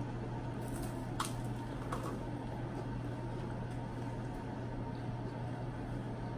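Faint chewing of MRE vegetable crackers topped with the meal's entrée, with a few soft crunches in the first two seconds, over a steady low hum.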